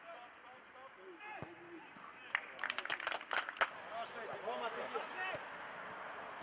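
Players' voices calling and shouting across an open football pitch, with a short burst of about a dozen hand claps a little over two seconds in.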